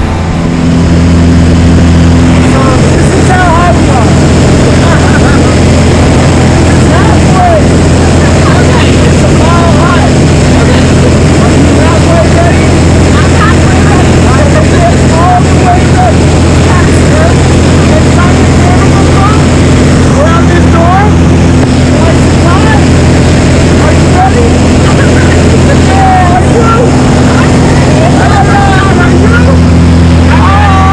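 Steady, loud drone of a small high-wing propeller plane's engine and propeller, heard from inside the cabin during the climb. Voices call out and laugh now and then over the engine noise.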